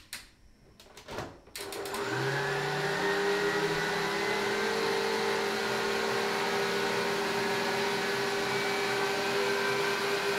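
Electric stand mixer with a wire whisk: a few clicks and knocks as its head is set in place, then about one and a half seconds in the motor spins up and runs steadily with a whine, whisking the mix in a stainless steel bowl.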